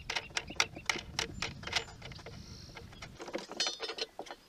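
Light metallic clicks and clinks of a wing nut and hold-down bar being worked loose by hand on a battery mount, with a short jingle of metal near the end. A low rumble underneath stops abruptly about three seconds in.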